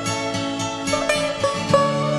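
Instrumental opening of an Irish folk ballad, before the singing: plucked string notes, a few each second, over sustained held notes.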